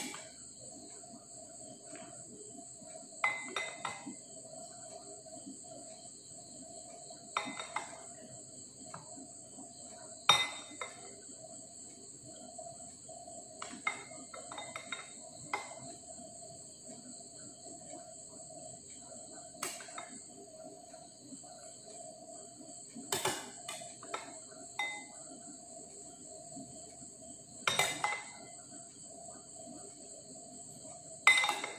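A metal spoon clinking against a glass mixing bowl every few seconds while an Oreo-and-milk mixture is scooped into a plastic popsicle mould, over a steady high-pitched background drone.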